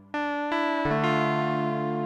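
KORG Minilogue analog synthesizer played live. After a brief lull, a bright chord comes in sharply, followed by several quick note and chord changes, each with a sharp attack.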